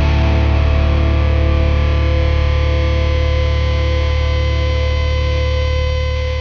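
Rock band music: electric guitars through distortion and effects, over bass, holding one sustained chord that rings on and slowly dies away as the song closes.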